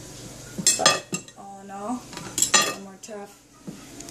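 A steel knife clinking sharply against a ceramic plate twice, about two seconds apart, as a rolled skirt steak is cut through on it, with a brief voice between the clinks.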